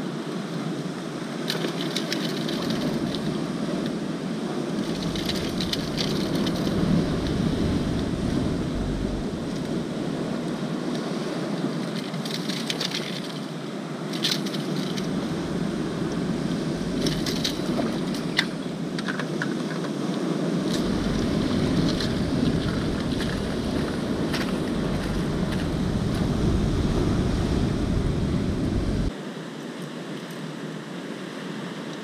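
Wind gusting on the microphone over a steady wash of surf, with scattered light clicks and rustles as a hooked sea bass and lure are handled. The noise drops off suddenly about a second before the end.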